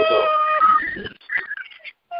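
A steady pitched tone with overtones on a conference-call phone line, cutting off about half a second in, followed by faint broken scraps of sound.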